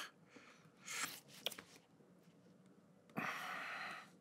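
Quiet room with a man's faint breathing: a short breath about a second in, a small click, and a longer breath out near the end.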